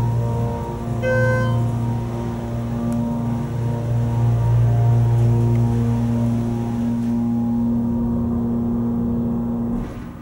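Schindler 330a hydraulic elevator travelling up: its pump motor gives a steady, loud hum that cuts off just before the end as the car stops. A brief chime sounds about a second in.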